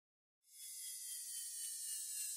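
Faint high-pitched hiss with a few thin steady tones, fading in about half a second in and slowly growing louder.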